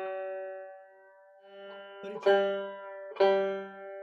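A banjo's third (G) string, plucked and let ring while it is tuned down from sharp. A ringing note fades over the first second, then the string is plucked again twice about a second apart, each note ringing out.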